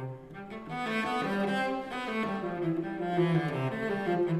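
Solo cello played with the bow, unaccompanied: a melodic line of held notes moving from one pitch to the next.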